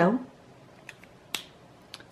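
A few light, sharp clicks: one a little before halfway, a louder one just past halfway, and a faint one near the end. They come from hands handling the paper tile and drawing pen on the table.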